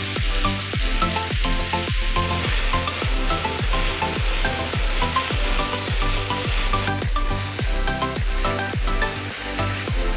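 Background music with a steady beat and a bass line, over the hiss of onions and tomatoes frying in a pan as a spatula stirs them.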